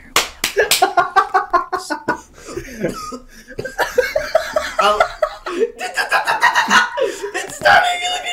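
Voices and laughter, with a few sharp clicks or smacks in the first second.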